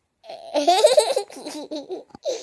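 A young boy laughing hard in a run of high-pitched bursts, starting about a quarter of a second in.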